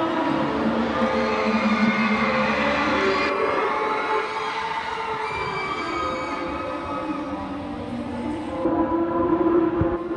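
Drawn-out, layered held tones like a sustained chord from a performance soundtrack played over loudspeakers in a large hall; the mix of tones shifts about three seconds in and again near the end.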